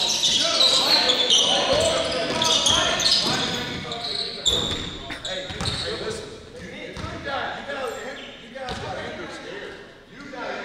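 Voices calling out in a reverberant gymnasium, louder in the first half and fading toward the end, with a basketball thudding on the hardwood floor now and then.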